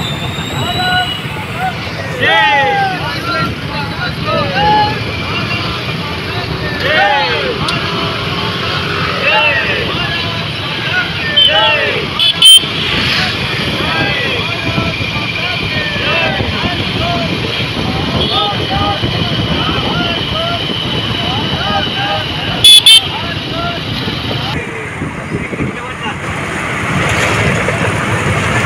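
Many motorcycles and scooters running slowly in a procession, with people calling and shouting over the engines and horns honking. A long held horn tone sounds through the middle stretch, and there are two sudden loud bangs about ten seconds apart.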